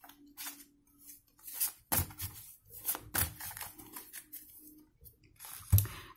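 A deck of tarot cards being shuffled by hand: a handful of short papery slaps and swishes at uneven intervals, with a faint steady hum underneath.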